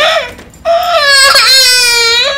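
A toddler girl crying loudly: one high wail trails off just after the start, and after a short break a second long wail begins and is held.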